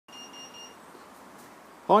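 Three quick, high-pitched electronic beeps run together at the very start, followed by faint steady background hiss. A man's voice comes in right at the end.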